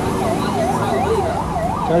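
An electronic siren wailing rapidly up and down, about three sweeps a second.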